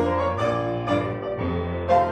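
Grand piano and electric bass guitar playing together in a slow passage, the bass notes changing about every half second.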